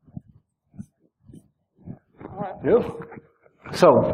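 Speech: a lull with a few faint, brief voice sounds, then a man's voice rising in pitch about two and a half seconds in, and clearer speech near the end.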